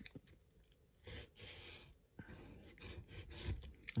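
Fingernail picking and scraping at the adhesive sticker seal on a plastic card storage cube: faint scratching and rubbing in short spells, with a few small clicks.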